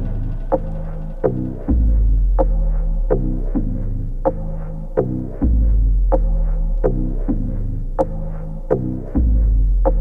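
Progressive house track in a stripped-back section: deep sustained bass notes throb and change about every four seconds, under sharp percussive hits that come a little under a second apart.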